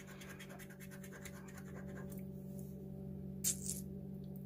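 Metal bottle opener scraping the coating off a scratch-off lottery ticket in quick, fine strokes. The scraping stops about halfway through, and a single short rasp comes near the end.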